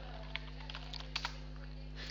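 Computer keyboard typing: a few faint, scattered keystroke clicks as login details are keyed in.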